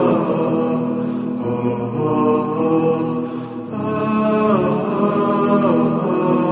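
Closing music: melodic vocal chanting with long held notes, and the melody sliding down in ornamented runs in the second half.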